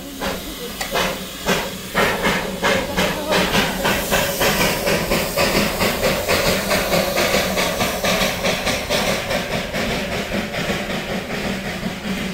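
Darjeeling Himalayan Railway B-class narrow-gauge steam locomotive working past: a steady hiss of steam over rhythmic exhaust chuffs, which quicken from about two to three or four a second as the train moves off.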